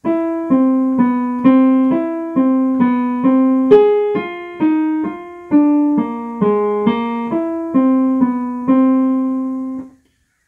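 Piano playing single notes one after another, about two a second, each struck and fading, in pairs that step from a chord's third or seventh down to its root: a jazz practice exercise that outlines the root and shell tones of each chord of a tune.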